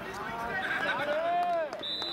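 Players shouting across the football pitch, with one long call that rises and falls in pitch. Near the end a steady high whistle tone starts.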